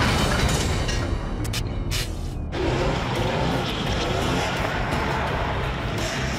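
A race car's engine running hard, mixed with music; the sound changes character about two and a half seconds in.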